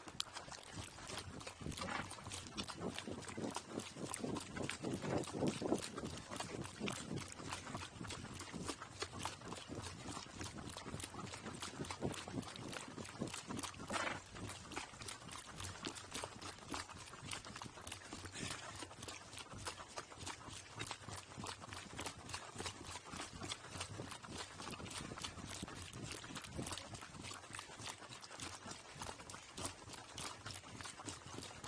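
A pack burro walking on a gravel road, its hooves crunching in a quick, steady run of clicks, heard close up from its own pack saddle.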